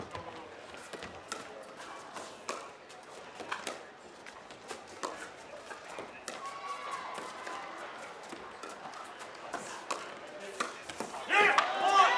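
Pickleball paddles striking a hard plastic ball in a long dink rally: a run of sharp pops at uneven intervals.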